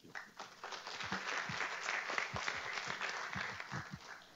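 Audience applauding: a faint patter of many hands clapping that fills in during the first second and thins out near the end.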